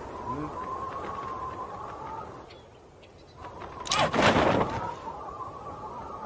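Cartoon skydiving sound effects: a steady, slightly wavering whistle during the freefall, then a sudden loud rush about four seconds in as the parachute opens, after which the whistle resumes.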